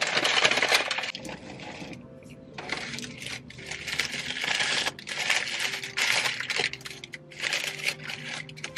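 Crinkly paper fast-food packaging rustling and crackling as a burger is unwrapped, in irregular bursts with a short lull about two seconds in.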